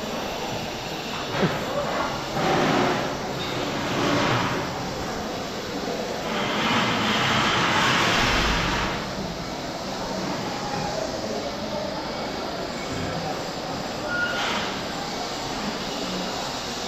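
Steady rushing background noise with no clear tone. It swells several times and is loudest from about six to nine seconds in.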